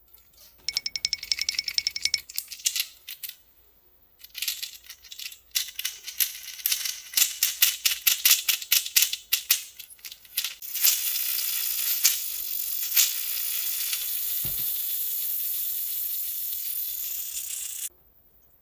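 Plastic toys being handled and rattled: fast runs of sharp clicks, then from about eleven seconds a steady high whirr that cuts off sharply just before the end.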